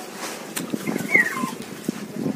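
A cat meows once about a second in, a short call that falls in pitch. A few sharp knocks from plastic strawberry baskets being handled are heard around it.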